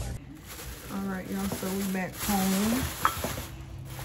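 A woman's voice speaking briefly, over plastic shopping bag rustling and crinkling, with a sharp click about three seconds in.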